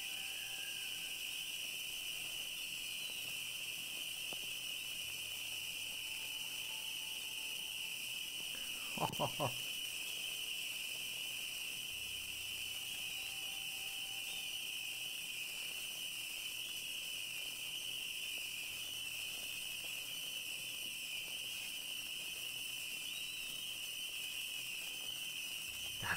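A steady, high-pitched hiss from the dense crackling of hundreds of firework batteries going off at once, with no single bangs standing out. A man laughs briefly about nine seconds in.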